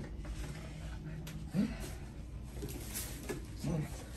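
Two short hummed "mm" acknowledgments from a person, about a second and a half in and again near the end, over a low steady room hum.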